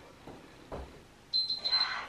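A woman breathing hard from exertion: a soft breath about halfway through, then a long, forceful out-breath near the end.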